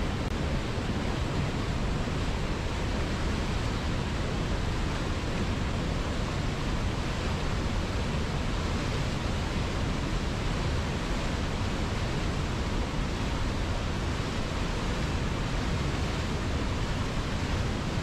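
A fast river running over rocks in white-water rapids: a steady, even rush of water with no change in level.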